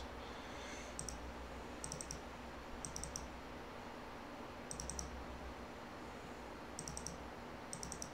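Computer mouse buttons clicking in quick double clicks, about six times, a second or two apart, over a faint steady room hum.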